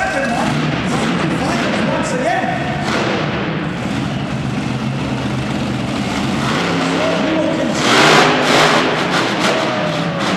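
Aftershock monster truck's supercharged V8 running in an arena, echoing, then revving hard about eight seconds in as the truck pulls away.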